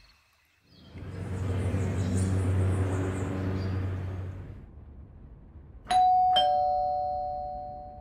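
Doorbell ding-dong: two chimes, a higher tone then a lower one about half a second apart, each ringing out and fading over about two seconds. Before it, a low swelling rumble rises and dies away over about three and a half seconds.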